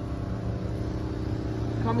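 A steady low engine hum holding one even pitch, with a man's voice starting near the end.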